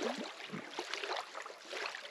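Beach ambience: the steady hiss of small waves washing on the sand close by, with a few faint clicks.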